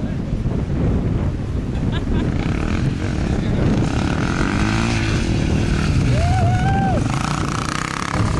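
Wind buffeting the microphone over a distant dirt bike engine revving up and down.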